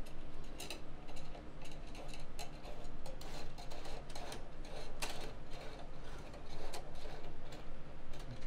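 Light, irregular clicks and ticks of 1.75 mm PLA filament being handled and pushed through a PTFE (Teflon) guide tube, the loudest click about five seconds in.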